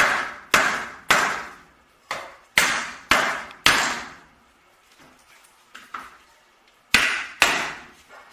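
Light hammer taps on the corner of a wooden stretcher-strip frame, driving the joint together until it sits flush. About seven taps roughly half a second apart, a pause of a few seconds, then two more near the end.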